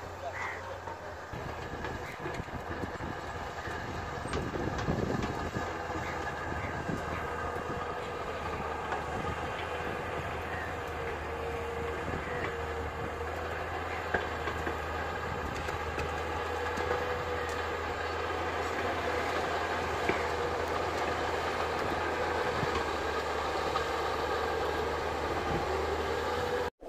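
Tracked hydraulic excavator's diesel engine running steadily as it works, with a few sharp clicks and clanks.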